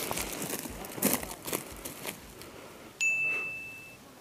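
Footsteps crunching over dry leaves and sticks, then about three seconds in an added sound-effect ding: one bright, steady high tone that rings for about a second.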